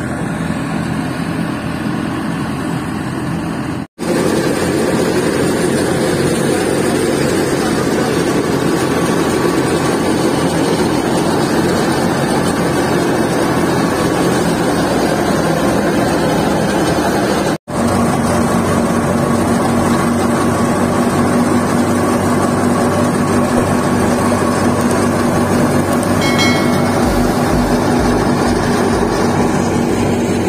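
Tractor-driven wheat thresher running steadily, its drum and V-belt drive turned by the tractor's PTO shaft. The loud, dense machine noise drops out sharply twice, about four and about seventeen seconds in. After the second break a steady hum runs underneath.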